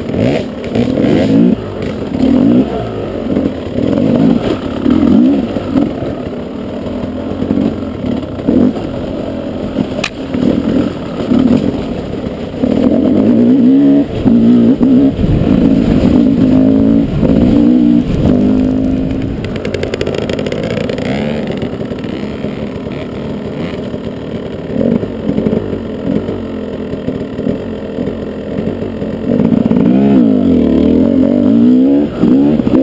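KTM 300 EXC two-stroke single-cylinder enduro engine revving up and down as the bike is ridden over rough ground, with clattering knocks from the bike over rocks. The revs climb and hold louder for several seconds about halfway through, then ease off.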